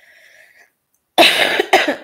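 A woman coughing: loud, harsh coughs in quick succession starting a little over a second in.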